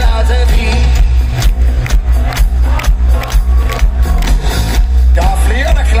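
Hard rock band playing live through a loud PA, with a steady drum beat over heavy, booming bass. A voice line is heard near the start and comes in again near the end.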